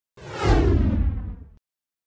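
Whoosh sound effect with a deep low boom, sliding downward in pitch and cutting off suddenly after about a second and a half: a logo intro sting.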